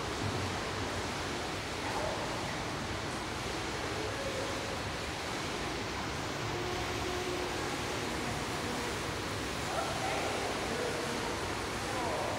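Indoor swimming pool ambience: a steady wash of noise from the stirred water and the pool hall, with faint voices now and then.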